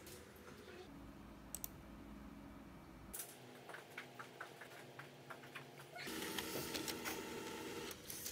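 Quiet office room tone with faint scattered clicks, then about six seconds in an HP desktop printer starts up, running steadily as it feeds and prints a sheet of paper.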